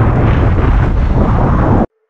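Loud, steady wind buffeting the microphone of a camera carried on a moving road bike, a low rumbling rush, which cuts off abruptly near the end.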